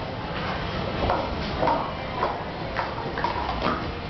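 Plastic sport-stacking cups clattering in a quick 3-3-3 run: three stacks of three cups stacked up and then brought back down, heard as a run of quick light clicks.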